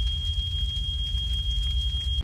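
Fire sound effect for a burning room: a low rumble with crackle under a steady high-pitched tone.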